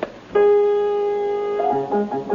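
Upright piano: a chord struck about a third of a second in and held, then quick short notes and chords starting near the end.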